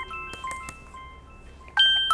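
Incoming-call ringtone from a laptop: a descending electronic chime of a few clear notes with an echoing tail, ringing again near the end.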